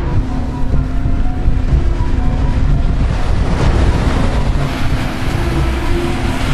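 Wind buffeting the microphone outdoors: a loud, steady low rumble.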